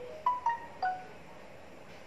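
A short electronic alert chime from a phone: four or five quick notes in the first second, rising then falling in pitch.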